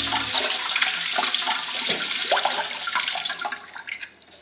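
Water running from a kitchen tap into a steel sink as dishes are washed: a steady rush with a few faint clinks, dying away near the end.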